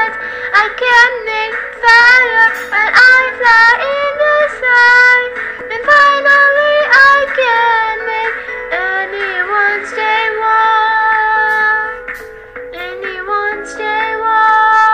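A song: a high-pitched sung voice over backing music.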